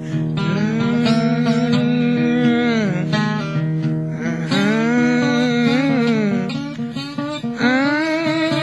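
Slow acoustic country blues on bottleneck slide guitar, long held notes bending and gliding in pitch between the sung lines, with two short choppier breaks.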